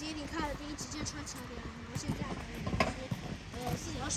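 A voice speaking briefly, then scattered light clicks and knocks.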